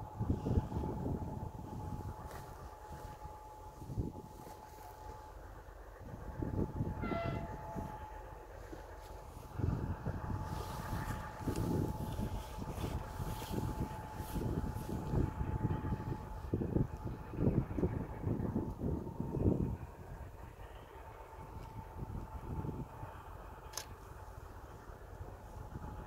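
Distant ST44 diesel locomotive (Soviet-built M62, two-stroke V12) running, heard as a low rumble that surges irregularly, with a steady high whine throughout. A brief horn-like tone sounds about seven seconds in.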